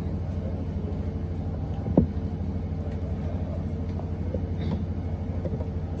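Steady low rumble with a fast, even flutter, from an unseen engine or machine running nearby, and a single sharp knock about two seconds in as the handheld microphone is passed to the next speaker.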